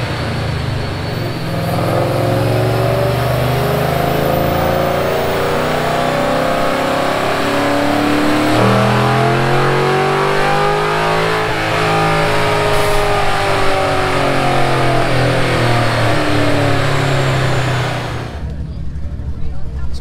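Ford Mustang's engine running on a chassis dynamometer. It holds a fairly steady note, then from about nine seconds in rises in pitch and winds back down over the next several seconds, and cuts off shortly before the end.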